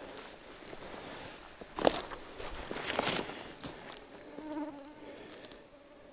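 A flying insect buzzing near the microphone, a faint steady hum that comes in about four seconds in. Before it come two short rustling knocks, the loudest sounds here.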